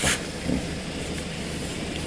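A steady low background rumble with an even hiss, and a short burst of hiss at the very start.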